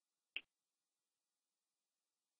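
Near silence, with one short faint click about a third of a second in.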